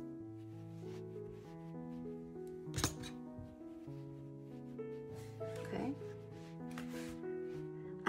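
Soft background music of sustained notes that change pitch every second or so, with a brief click about three seconds in.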